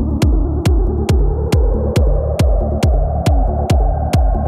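Psytrance from a DJ set: a steady kick drum a little over twice a second with rolling bass notes between the kicks, under a synth sweep that rises slowly in pitch. The high drums are dropped out, leaving only kick, bass and the rising sweep.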